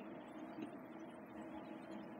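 Faint, steady room tone with no distinct sound.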